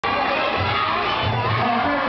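Crowd of spectators shouting and cheering at a kickboxing bout, many voices at once, steady and loud.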